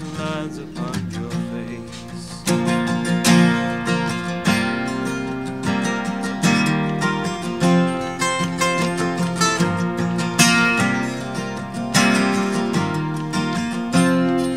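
Acoustic guitar strumming chords in an instrumental passage of a live song, played softly for the first couple of seconds and then with fuller, more forceful strums.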